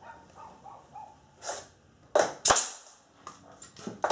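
Pneumatic stapler firing staples into wood framing: two sharp shots about a third of a second apart, a little after two seconds in.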